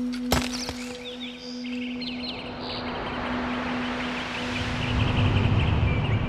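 Sound design under an animated film title: a steady low drone with a sharp click just after the start, and many short bird-like chirps. A rushing noise swells and grows louder toward the end, building into the music.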